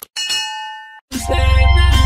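Outro sound effect of a mouse click, then a bright bell-like ding that rings for just under a second and cuts off suddenly. About a second in, music with a heavy bass comes in loudly.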